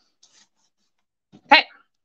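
One short dog bark about one and a half seconds in.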